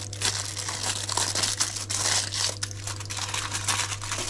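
Foil inner wrapper of a chocolate bar being peeled open and crinkled by hand, an irregular run of crackles and rustles, over a steady low hum.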